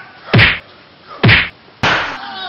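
Three loud whacks of blows struck on a person. The first comes about a third of a second in, the next about a second later, and the last follows quickly near the end.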